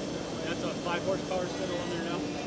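A faint man's voice off the microphone asking a short question, over the steady background din of a busy exhibition hall with a steady tone running underneath.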